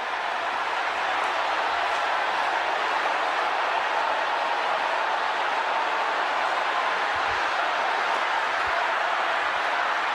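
A congregation praying aloud all at once, their many voices merging into a steady wash of sound with no single voice standing out.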